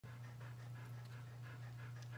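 A dog panting faintly, quick even breaths about three a second, over a steady low hum.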